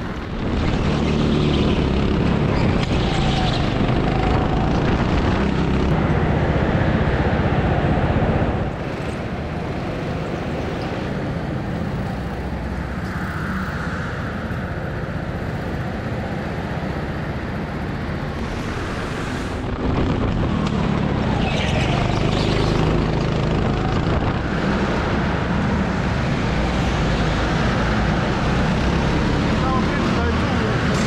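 Petrol go-kart engines running in an indoor karting hall, with people talking over them. The sound changes abruptly about 9 and 20 seconds in, where the video cuts between karts on the track and karts in the pit lane.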